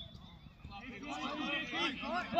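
Several people shouting at once on a football pitch, their overlapping calls building up about half a second in.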